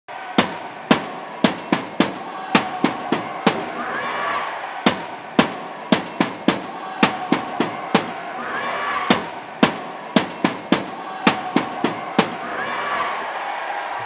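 Wheelchair rugby chairs clashing: a quick, uneven run of sharp metal bangs over the noise of a crowd in a sports hall, which swells every few seconds.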